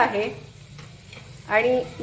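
Curry leaves and dried red chillies sizzling in very hot oil in a small aluminium pot as a tempering (phodni), stirred with a steel spoon. A woman's voice is heard at the start and again near the end.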